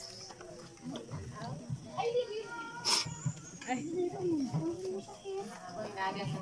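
Several people talking indistinctly, with a sharp click about three seconds in.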